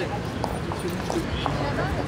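Hard-soled shoes and heels clicking on stone paving as a group of people walks, over indistinct voices.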